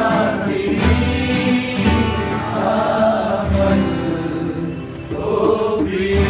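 A group of men singing a Nepali pop song together, accompanied by several strummed acoustic guitars.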